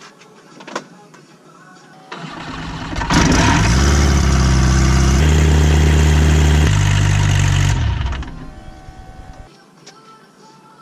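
Rotax 912 iS engine of a Pipistrel Virus SW being started for a test run after its 100-hour inspection (new spark plugs and fuel filter). It catches about two seconds in, runs loud and steady for about five seconds with its pitch shifting twice, then is shut down and fades out as the propeller spins down.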